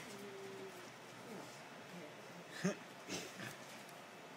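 A tabby cat rolling on a catnip toy makes small sounds: a faint drawn-out note at the start, then two short, louder grunt-like noises about two and a half and three seconds in.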